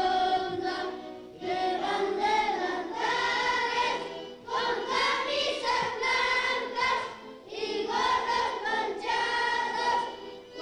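A group of young schoolchildren singing a ronda (circle song) together in unison, in phrases of about three seconds with short breaths between.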